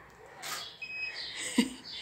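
A DSLR camera taking a photo: a short electronic focus beep about a second in, then a sharp shutter click a little later.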